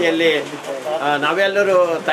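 A man speaking continuously in a steady speech.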